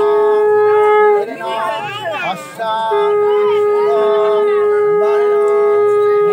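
Conch shell (shankha) blown in a long steady note that breaks off about a second in and starts again near the three-second mark, then holds. Women ululate (ulu) over it in wavering, warbling high cries, loudest in the break.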